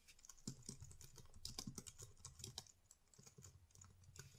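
Faint typing on a computer keyboard: a quick run of keystrokes from about half a second in, thinning out toward the end.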